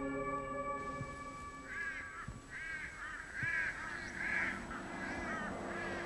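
A crow cawing about six times in a row, starting about two seconds in. Soft sustained ambient music tones fade away during the first second.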